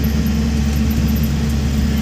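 Moving bus heard from inside its cabin: a steady low engine drone under road rumble.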